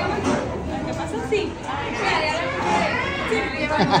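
Several people talking at once around a table, overlapping conversation, with a laugh near the end.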